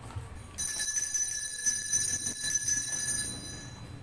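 Altar bells shaken for about three seconds, a bright ringing with many high tones that starts about half a second in and fades near the end, as rung at the elevation during the consecration of the Mass.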